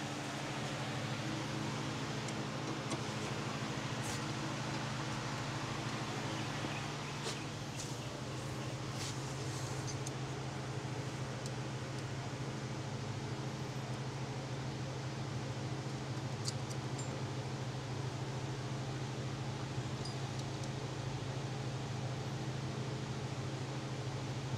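Steady machine hum, like a fan running, with a few faint clicks of small metal parts being handled as a bracket is taken apart by hand.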